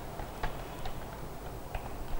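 Computer keyboard keys clicking: a few separate keystrokes at an uneven pace, over a low steady room hum.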